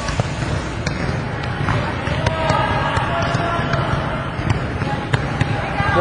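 Volleyballs being set and passed by many players at once: irregular slaps and thuds of balls on hands and floor over a steady background of voices.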